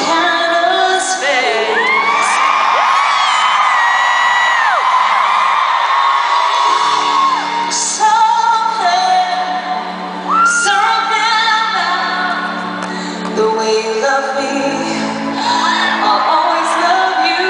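Live pop ballad: a woman sings long held notes with vibrato over piano, heard through a large hall's amplification. Audience members whoop and scream at a few points.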